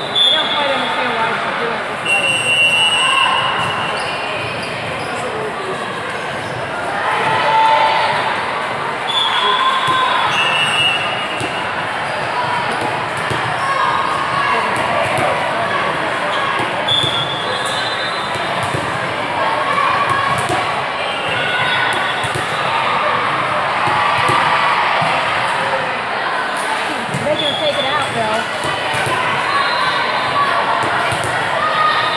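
Volleyballs being hit and bouncing on the hard courts of a large echoing sports hall, over the steady chatter of players and spectators. Short referee whistle blasts sound several times.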